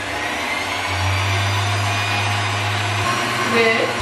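Stand mixer's motor running steadily as its wire whisk beats whole eggs for a sponge cake: a continuous motor hum and whine, with the low hum strongest through the middle.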